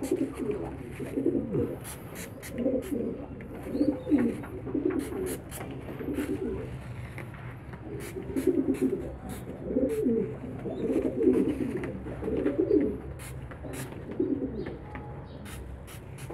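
Homing-pigeon squabs giving low cooing calls in many short, repeated bouts. Faint, sharp, short hisses of a hand spray bottle come in between the calls.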